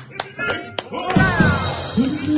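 Live band music with sharp percussion hits and pitched notes, and a falling slide in pitch a little after a second in.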